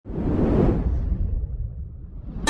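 Logo-intro whoosh sound effect over a low rumble. It comes in suddenly, swells within the first half second and then fades away.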